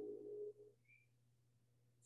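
The last chord of an upright piano dying away in the first half second or so, followed by near silence with a faint steady hum.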